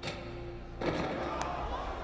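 Film soundtrack in which the background music stops a little under a second in and a louder murmur of many voices from a studio audience takes over, with one sharp click partway through.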